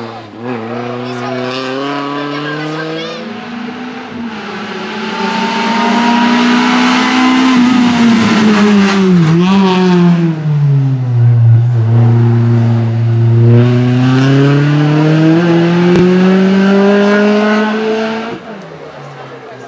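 Renault Clio race car's engine revving hard and easing off as it threads a cone slalom. Its pitch rises and falls in long sweeps, with a marked drop about nine seconds in and a long low stretch before it climbs again. It grows louder about five seconds in and stays loud.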